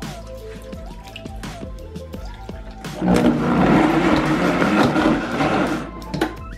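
A high-powered countertop blender runs loudly for about three seconds from halfway in, blending frozen banana, berries and almond milk into a thick smoothie base, and stops just before the end. Background music plays throughout.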